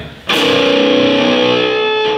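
An electric guitar chord struck once, about a third of a second in, and left to ring out.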